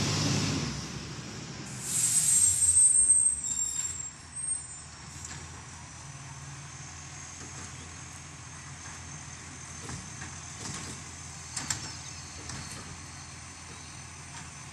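Garbage truck's diesel engine fading as it pulls away, then a loud hiss and high squeal of its air brakes about two seconds in. After that the engine runs low and steady further off, with a few faint clicks.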